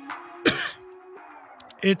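A man clears his throat once, a short harsh burst about half a second in, over background music with long held notes; he starts speaking again near the end.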